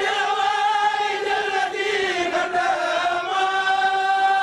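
Chanted vocal jingle of a channel ident: several voices singing long held notes, wavering in pitch at first and settling onto one steady chord about three seconds in.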